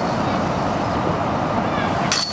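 Steady outdoor background rumble with no distinct events, the kind of even noise that distant city traffic makes.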